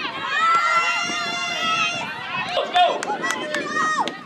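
Several high-pitched voices shouting and cheering together, held in long drawn-out calls for about two seconds, then breaking into shorter shouts.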